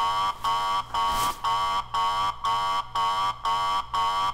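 An electronic alarm buzzing in evenly spaced pulses, about two a second, each a harsh, high buzz broken by a short gap.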